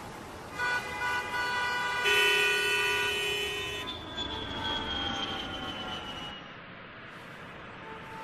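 Vehicle horns sounding in overlapping steady notes, loudest in a horn blast of a couple of seconds, followed by a high tone that slowly falls in pitch.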